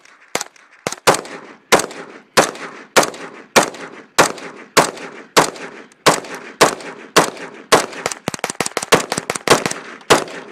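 Gunshots fired one after another at a steady pace, about one every 0.6 seconds, with a quicker string of shots near the end. Each shot is a sharp crack with a short echo trailing after it.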